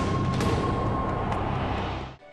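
Title-sequence sting for an animated logo: music under a loud, dense rushing whoosh, steady throughout and cutting off suddenly at the end.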